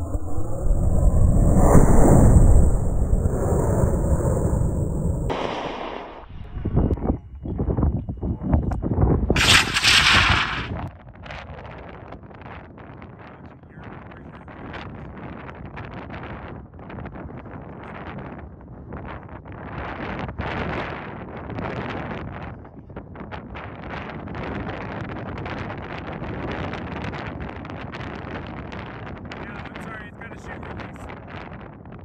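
High-power model rocket motor lighting and burning at lift-off: a loud, rushing roar for about five seconds that stops abruptly. Uneven loud bursts follow for a few seconds, then wind buffets the microphone for the rest.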